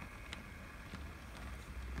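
Faint low rumble of Hornby Mark 3 model coaches rolling along the track as they are pushed by hand, with one light tick about a third of a second in.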